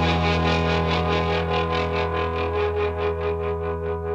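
Music: a sustained closing chord, on what sounds like an effects-laden guitar, ringing out and slowly fading while pulsing rapidly and evenly.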